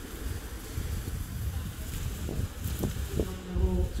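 Wind buffeting the microphone over the steady rush of water gushing from a pump's delivery pipe and splashing into a storage tank.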